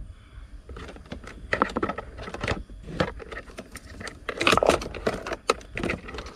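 Wires and plastic connectors being handled and pushed into a car's dashboard cavity: rustling with sharp plastic clicks and taps, in two flurries, the louder one a little past the middle.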